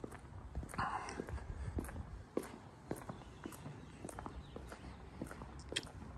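Faint footsteps of a person walking on stone paving: short hard ticks at an uneven pace.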